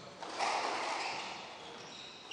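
Squash rally sounds in a hall: a sharp hit about half a second in that rings out and fades over about a second, and brief high shoe squeaks on the court floor near the end.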